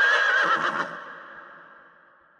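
A horse whinnying: one wavering, high-pitched call lasting under a second that dies away in a trailing echo.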